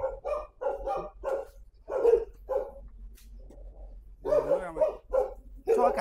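A dog barking repeatedly in short barks, a few a second, with a quieter pause in the middle before the barking picks up again.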